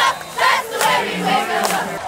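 A cheerleading squad shouting a cheer together in short, loud syllables, with crowd noise behind.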